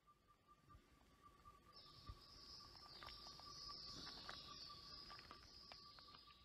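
Faint outdoor insect calls: a thin steady high note throughout, joined about two seconds in by a higher, buzzy trill, over a soft crackle of small ticks.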